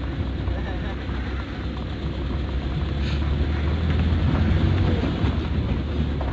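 Suzuki Carry's engine running at low speed as the truck moves slowly, a steady low hum that grows a little louder for a couple of seconds in the middle.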